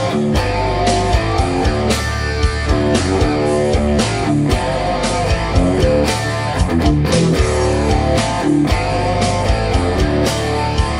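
A 1990 Jackson Soloist Archtop Pro electric guitar with twin Jackson humbuckers, played as a riff of quickly changing notes with heavy low notes and sharp picked attacks throughout.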